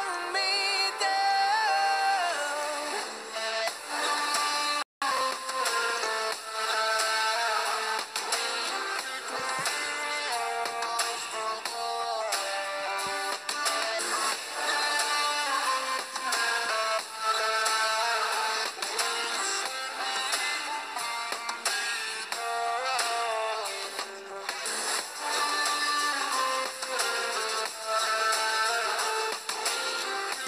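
Background music: a song with a gliding, processed-sounding melodic line over a steady accompaniment. It cuts out completely for an instant about five seconds in.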